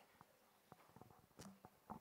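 Near silence: room tone with a few faint clicks, the clearest about one and a half seconds in and again just before the end.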